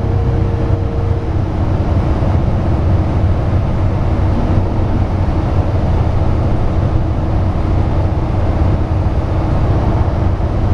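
Cabin noise of a New Flyer Xcelsior XN60 articulated bus cruising at highway speed: a steady low drone from its Cummins ISL engine mixed with road and tyre noise.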